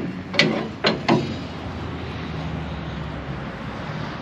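A semi-truck's stuck fifth-wheel release handle being worked by hand, with a few sharp metallic clunks in the first second or so. The truck's diesel engine idles steadily underneath.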